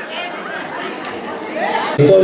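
Faint chatter of several voices in a theatre hall, with no single clear speaker.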